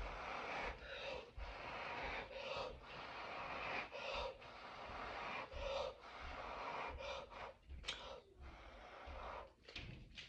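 A person blowing hard by mouth onto wet acrylic pouring paint to push it out into a bloom: repeated breathy blows, each about a second long, with short breaks for breath between them.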